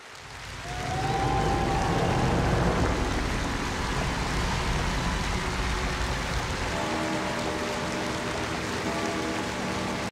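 Large crowd applauding and cheering, swelling up over the first second, with a few whistles or shouts about a second in. About seven seconds in, steady sustained music comes in under the applause.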